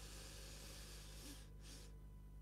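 A faint, slow, deep breath drawn in through the nose as part of a 15-second breathing exercise. A short extra sniff of air comes near the end.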